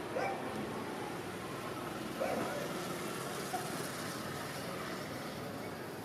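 Steady outdoor background noise with a few faint, brief distant voices.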